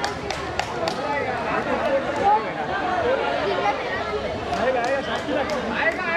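Overlapping chatter of several men's voices, with a few sharp clicks near the start and again near the end.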